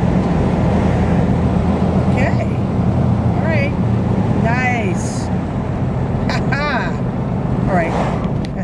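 Steady low rumble of a car's engine and tyres heard from inside the moving car as it drives out of a road tunnel. A few short voice exclamations sound over it.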